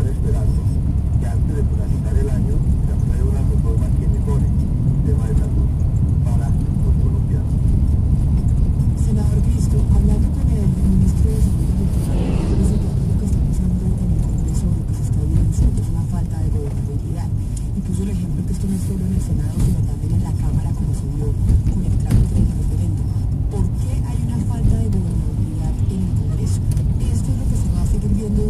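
Car cabin noise while driving downhill: a steady engine and tyre rumble, with muffled talk, likely from the radio, running underneath. A brief swell of noise comes about twelve seconds in.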